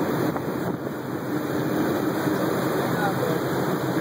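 Steady rush of wind and water aboard a catamaran under way, with the boat's engine running underneath.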